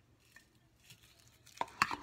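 Plastic spoon stirring softly in a glass of lemon water, then two sharp clicks near the end as the spoon knocks against the glass.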